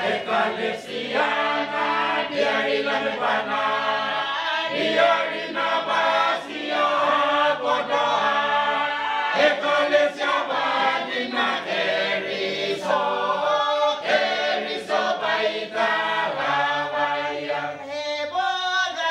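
Mixed choir of men and women singing a Motu peroveta hymn unaccompanied, in parts, with long held chords that change every second or so.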